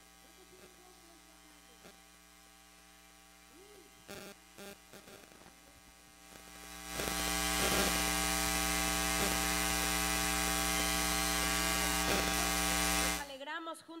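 Sound-system electrical buzz: a steady hum with hiss comes through the loudspeakers about seven seconds in, holds level, then cuts off suddenly just before the end.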